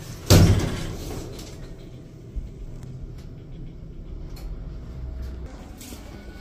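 An elevator: a loud thump about a third of a second in, then the low, steady rumble of the moving car and its sliding doors.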